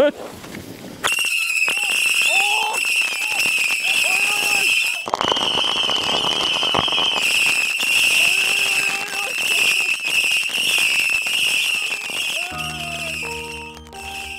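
A battery of whistling missile fireworks firing in a continuous barrage: a steady, piercing high-pitched shriek with crackling, starting about a second in. Background music comes in near the end.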